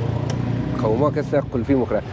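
Speech over a steady low engine hum from street traffic. The hum is plainest for the first half-second, before the talking starts.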